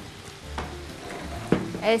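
Chopped tomatoes, onions and peppers sizzling steadily in oil in a frying pan while a wooden spoon stirs them, with two sharp knocks against the pan, about halfway and three-quarters through.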